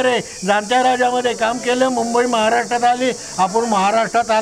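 A man talking continuously in Marathi, over a steady high-pitched hiss.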